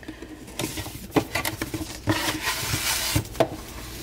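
A satin ribbon being slid off a rigid cardboard gift box as the box is handled: a rustling, sliding hiss in the middle, among several sharp taps and clicks of fingers and box.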